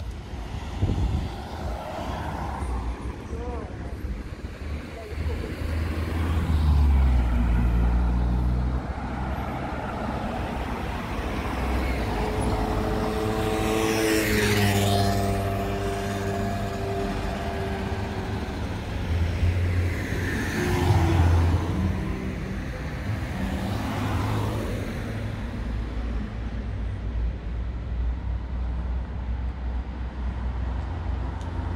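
Motor vehicles passing on a residential street, several in turn over a steady low traffic rumble. The loudest goes by about halfway through, its engine note falling in pitch as it passes.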